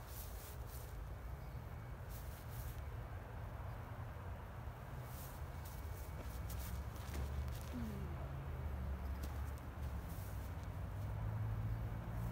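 Low steady rumble of distant road traffic that grows louder near the end, with a few faint ticks over it.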